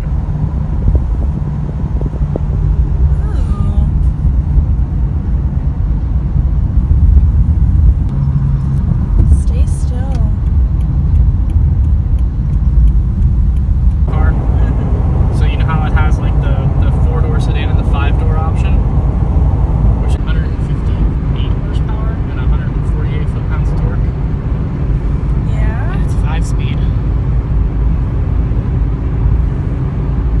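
Car cabin noise while driving, a steady low rumble of road and engine. From about halfway through, a voice sounds over it.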